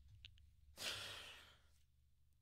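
A man's breathy sigh, one exhale about a second in that fades out within half a second or so.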